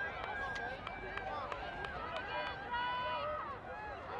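Several voices calling and shouting over one another during a youth lacrosse game, with one long, high shout about three seconds in.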